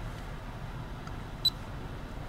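Low, steady background hum in a car cabin, with one short high beep about one and a half seconds in.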